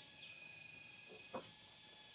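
Near silence: room tone with a faint thin steady tone for about a second and a small click about one and a half seconds in.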